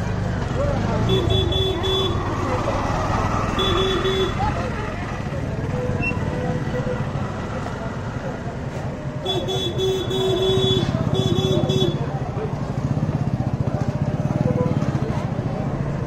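Busy market street: motorcycle and auto-rickshaw engines and a murmur of crowd voices, with a vehicle horn tooted in rapid strings of short beeps about a second in, again at four seconds, and in a longer run from about nine to twelve seconds.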